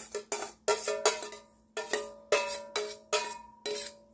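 A metal spoon knocking and scraping against a metal pot, about ten sharp clinks in quick succession, each ringing briefly.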